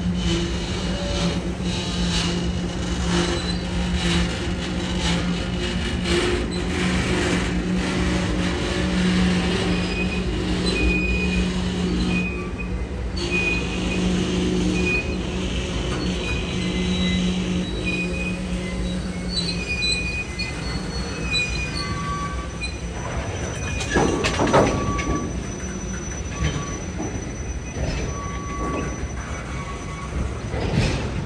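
Freight cars rolling past at close range: a steady rumble of steel wheels on rail, with thin high wheel squeals coming and going. A low steady hum fades out about twenty seconds in, and a short burst of clanking comes about 24 seconds in.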